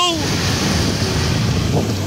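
Ocean surf breaking and washing in over the shallows, a steady rushing noise, with wind buffeting the microphone.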